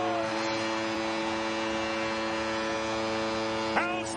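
Arena goal horn blaring a steady, many-toned blast after a Seattle Kraken home goal, over a cheering crowd.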